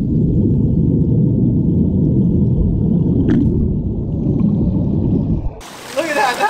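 Dense bubbling of carbon dioxide gas pouring off blocks of dry ice in a swimming pool, heard underwater through a waterproof camera housing as a deep, muffled rumble. It cuts off abruptly shortly before the end.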